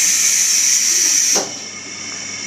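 Loud, steady hiss of compressed air venting from the 711 series electric train's pneumatic system while it stands at the platform; it cuts off sharply about a second and a half in.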